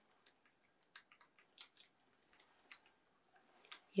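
Soft, irregular keystrokes on a computer keyboard, a few faint clicks spaced unevenly.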